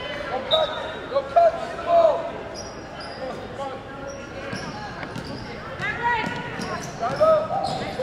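A basketball bouncing on a gym floor during play, with scattered shouts and voices from the court and stands, echoing in a large gymnasium.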